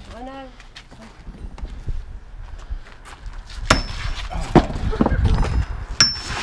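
Sledgehammer striking a galvanised steel scaffold tube set inside a brick pillar: a sharp metallic clang with a brief ring nearly four seconds in, then several heavier knocks and rumbling masonry, and another ringing clang near the end. The blows send shock through the pipe to crack the concrete and bricks around it.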